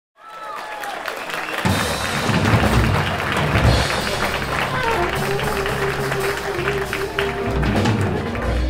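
Live jazz big band playing. Bass and drums come in about a second and a half in, and a held melody note starts at about five seconds.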